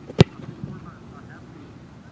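A single sharp thud of a foot striking a football off a kicking tee, a field-goal kick, about a fifth of a second in.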